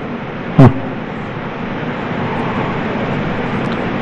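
Steady hushed background noise of a crowded courtroom picked up by the bench microphones, with one short spoken syllable from a man about half a second in.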